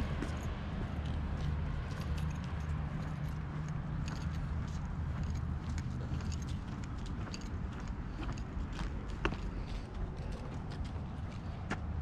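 Footsteps and small taps on a concrete sidewalk, under a low, steady outdoor rumble that thins out about halfway through.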